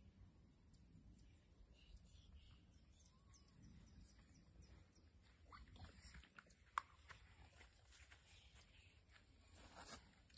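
Near silence: faint outdoor ambience with a few soft clicks and rustles, and one short sharp click about seven seconds in.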